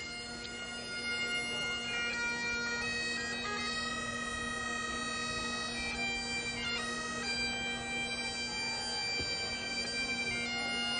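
A pipe band's bagpipes playing: a steady drone sounds under a chanter melody that moves between held notes.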